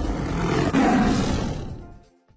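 Tiger roar sound effect for an animated logo sting. It swells to its loudest about a second in, then fades away by the end.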